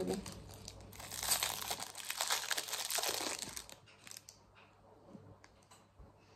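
A shiny chocolate-candy wrapper being unwrapped by hand. It crinkles busily for about three seconds starting a second in, then gives only a few small rustles.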